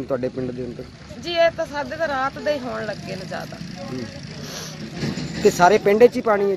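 A person talking, with steady background noise in the pauses between phrases.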